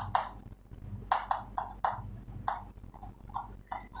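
Chalk writing on a chalkboard: a string of short taps and scrapes in an uneven rhythm, about a dozen strokes.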